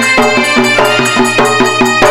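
Traditional folk music: a melody instrument playing short, stepped notes over a fast, even drum beat.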